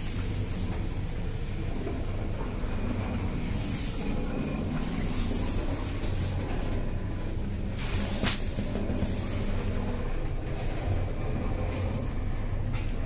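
Steady low hum and rumble heard from inside a moving 1998 KMZ passenger elevator car (1 m/s traction lift) during a ride, with a single sharp click about eight seconds in.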